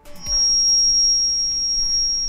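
A loud, steady, high-pitched electronic tone over a hiss, holding one pitch throughout.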